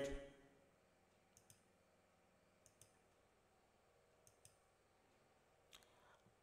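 Near silence broken by four faint, sharp computer mouse clicks, spaced a second or more apart, as a colour is picked on screen.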